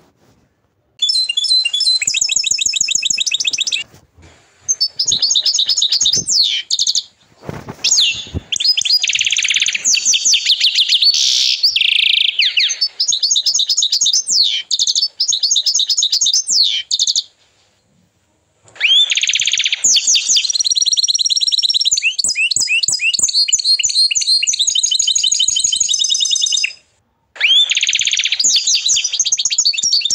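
Agate canary singing: long phrases of fast trills and rolling repeated high notes, broken by short pauses, the longest about a second a little past halfway.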